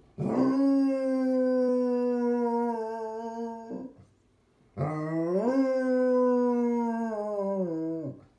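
Basset hound howling: two long howls with a short breath between. The first is held at a steady pitch for about three and a half seconds, and the second swoops up in pitch as it starts, then holds and sags slightly.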